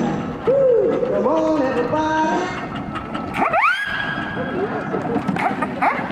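Rock-and-roll style music with singing, which stops about halfway through; then a steam whistle sounds, its pitch rising quickly as it opens and then holding for a moment.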